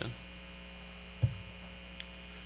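Steady electrical mains hum in the recording's audio chain, with a short low thump a little past halfway through.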